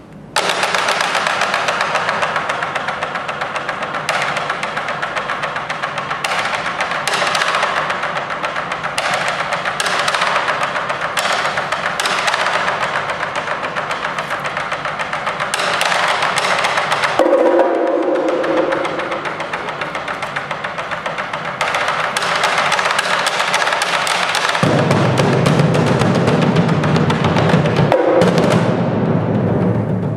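Percussion trio playing fast, dense strokes on muted gongs, bongos and a shared concert bass drum, starting suddenly about half a second in. A deep drum sound comes in strongly for the last few seconds.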